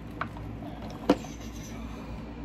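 Light clicks from a small plastic cosmetic tube being handled, the sharpest about a second in, over a steady low hum.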